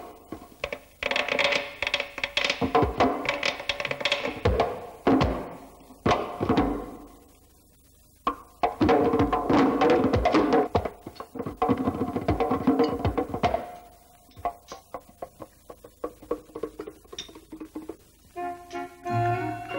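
Film soundtrack music built on sharp, dry percussive strikes with pitched tones, in busy phrases that break off into a short lull about halfway through and thin out to sparser strikes near the end.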